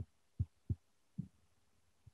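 Four faint, short low thumps, unevenly spaced, in an otherwise quiet pause.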